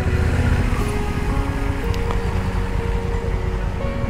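Motorcycle engine running at low speed with road and wind noise, under background music of held notes that change pitch every second or so.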